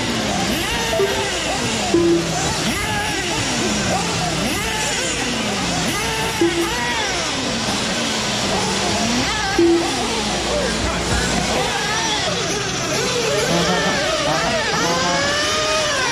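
Several nitro RC buggy engines screaming and revving, their pitch rising and falling and overlapping as the cars run. A few short beeps cut through the engine noise.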